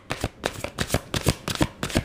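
A deck of tarot cards being shuffled by hand: a quick, uneven run of light card slaps, about six a second.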